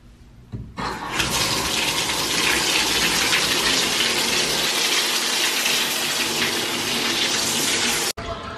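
Bathtub faucet turned on, water running steadily from the spout into the tub to fill it; the flow starts about a second in.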